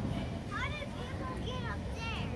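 A young child's high-pitched voice calling out in a few short rising-and-falling calls, over a steady low rumble of street background noise.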